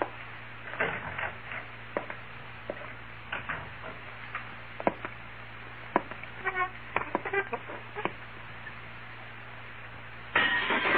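Radio-drama sound effects: scattered footsteps and knocks at an uneven pace, with two short creaks in the middle, over a steady low hum in the old recording.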